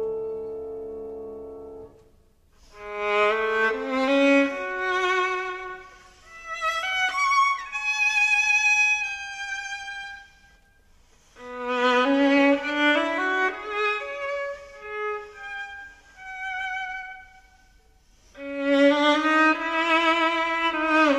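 Solo violin playing a slow, expressive melody with vibrato, in phrases separated by brief pauses. A held chord fades away during the first two seconds before the violin enters.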